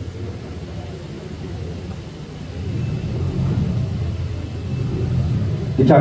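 A low rumble that grows louder about halfway through.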